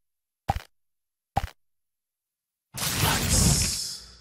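Two short pop sound effects about a second apart, then a loud rushing, crashing noise with a low rumble that starts near the end and lasts over a second: a logo sting.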